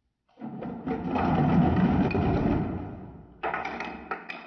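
Clear plastic cups clattering and knocking against each other and the tabletop as a stacked cup pyramid is brought down, a dense run of clatter that swells and then fades. About three and a half seconds in it gives way to separate sharp plastic clicks as cups are stacked.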